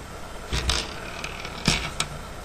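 Two short scraping, rustling handling noises, about half a second in and again near the end, as the orange cap is worked off a disposable U-100 insulin syringe.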